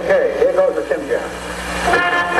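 A person's voice over the sound system, wavering up and down in pitch for about the first second, with no words caught. Swing band music starts right at the end.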